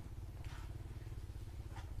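A small engine running steadily nearby: a low, even, pulsing rumble.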